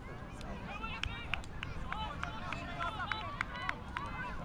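Distant shouts and calls of rugby players and spectators across the pitch, with scattered sharp clicks.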